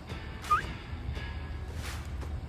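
Pickup truck engine idling with a steady low rumble. A short, rising squeak comes about half a second in, and a sharp click near the end.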